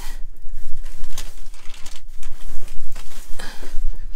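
Handling noise from packaging being moved about: irregular crinkling and rustling of plastic bags and cardboard with small taps and scrapes, close to the microphone.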